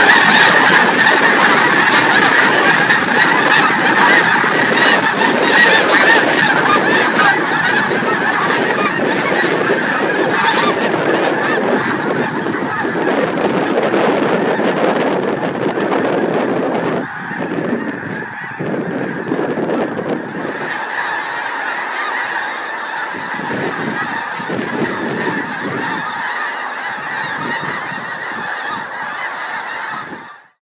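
A huge flock of snow geese in flight, a dense, continuous clamour of overlapping honking calls. It is loudest at first, drops somewhat a little past halfway, and cuts off abruptly at the end.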